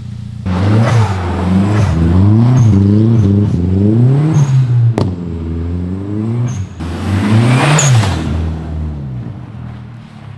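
Volkswagen Golf engine revving up and falling back about six times in a row, from a steady idle, with a sharp click about halfway through.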